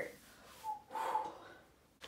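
A woman's short breathy exhale through the nose, like a small snort, with the sound fading away near the end.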